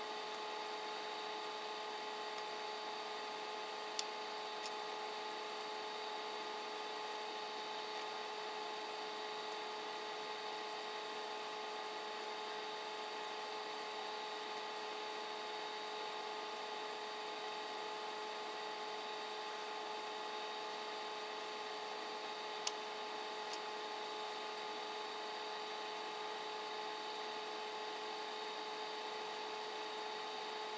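Steady machine hum and hiss, several fixed tones held level, with a faint single click about four seconds in and another a little past twenty seconds.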